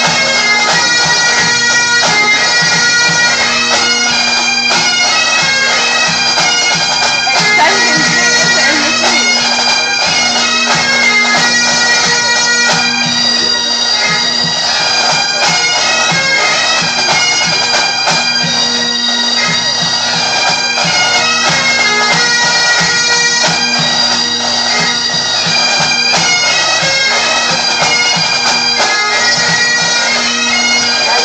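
A pipe band playing a tune together: bagpipes hold a steady drone under the shifting chanter melody, with drums playing along.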